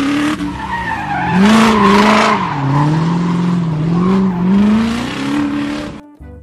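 Recorded race-car engine sound, revving up and down several times, with a tyre-squeal hiss loudest about a second and a half in.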